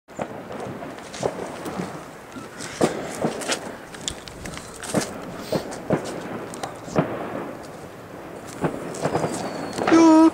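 Firecrackers and fireworks going off at irregular intervals, a string of sharp bangs about one a second, over a steady background hubbub.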